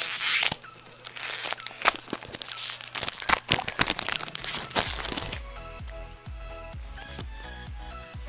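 A Pokémon booster pack's foil wrapper being torn open and crinkled by hand: a quick run of rips and crackles through the first five seconds, then it goes quiet under soft background music.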